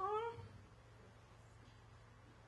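A short vocal sound from the woman speaking, falling in pitch over about half a second, then room quiet with a low steady hum.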